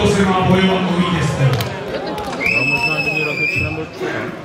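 Men's voices talking close by. About halfway through, a high steady whistling tone cuts through for about a second and a half.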